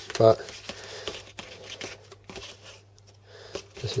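Insulated hookup wire being handled and moved across a desk: light rustling with scattered soft ticks, over a steady low hum.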